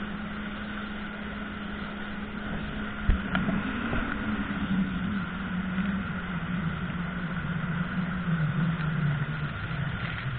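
Jet ski engine running at a steady pitch, then after a sharp thump about three seconds in its note rises and falls repeatedly, over a steady hiss of rushing water and spray.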